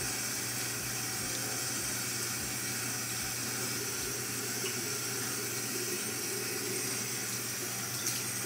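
Bathroom sink tap running in a steady stream.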